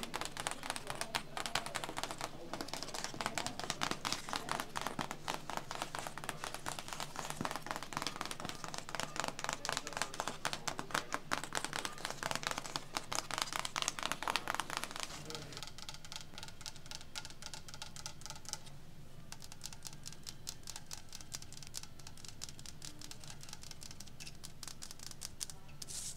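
Long acrylic fingernails tapping and scratching rapidly on an old cardboard box, many quick taps a second. About fifteen seconds in, the tapping turns softer and quieter.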